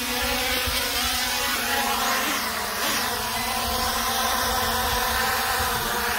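Holy Stone HS720E quadcopter drone's brushless motors and propellers giving a steady, many-toned buzz as it comes down onto its landing pad, the pitch wavering slightly partway through.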